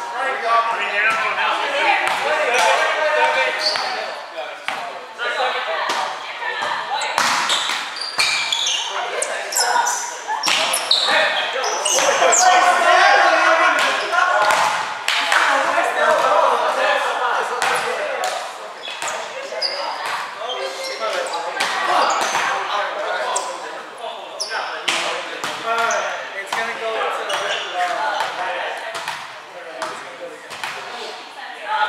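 Volleyball play: a volleyball struck by hands and forearms in serves, passes and hits, with players' voices calling out. The sounds echo in a gymnasium.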